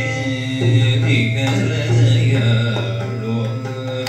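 Live Carnatic music: a gliding sung melody with violin accompaniment over a steady tambura drone, with a few drum strokes.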